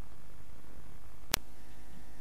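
A quiet gap between songs: faint low hum and hiss, broken about a second and a third in by a single sharp click, typical of an edit splice where two album tracks are joined.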